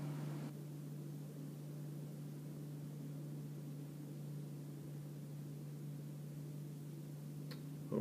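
A steady low hum with a faint even hiss behind it, and one faint click near the end.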